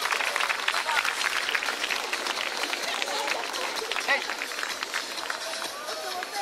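Large crowd of spectators chattering, with a dense patter of clapping that is thickest over the first few seconds, then eases.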